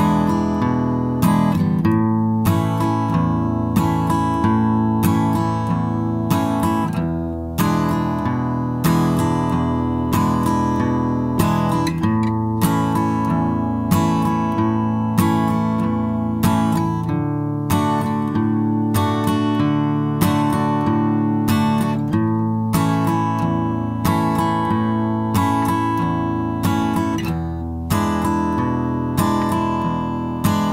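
Steel-string acoustic guitar played slowly in the key of A, in a boom-chick pattern: a bass note on the root string, then a down-up strum. It moves through E7, A and D chords with an even, steady beat.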